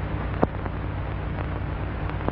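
Steady low drone with hiss on an old film soundtrack, and one sharp click about half a second in.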